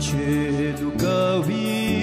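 A Bhutanese song: a voice singing held notes that bend and glide between pitches over a steady musical backing.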